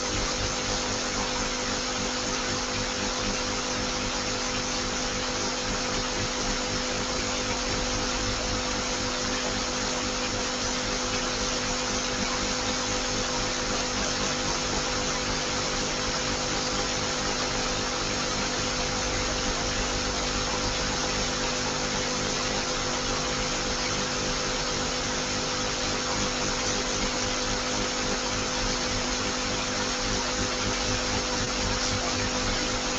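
Steady, unchanging hiss with a faint low hum, no speech.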